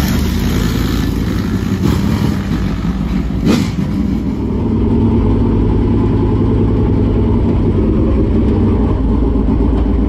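Dirt late model race car's V8 engine running steadily at low speed as the car rolls along a road, heard from inside the cockpit in the second half. A brief sharp noise about three and a half seconds in.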